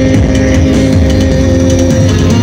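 Heavy metal band playing live: distorted electric guitars hold a sustained chord over bass and drums, loud, as picked up by a phone in the audience.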